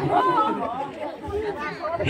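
Speech only: people talking, a little quieter than the loud stage speech around it.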